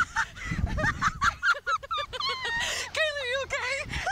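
Two riders on a Slingshot catapult ride screaming and laughing, high shrieks with a quick run of laughter about a second and a half in. Wind rumbles on the microphone in the first second or so as the seat is flung about.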